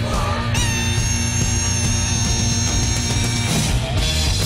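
Hard rock music: distorted electric guitar over driving bass and drums, with one long held note from about half a second in until near the end.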